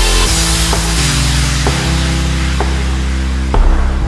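Background music: sustained chords over a deep, steady bass, with the chords changing every second or so.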